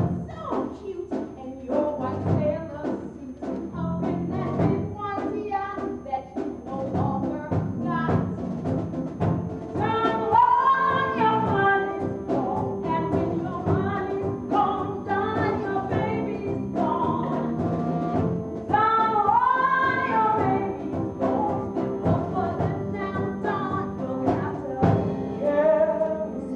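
A woman singing a show tune over instrumental accompaniment, holding long notes with vibrato twice, around ten and nineteen seconds in.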